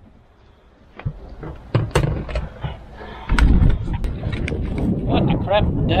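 A few sharp clicks and knocks, then from about three seconds in, strong wind buffeting the microphone with a loud, continuous low rumble. A man's voice starts near the end.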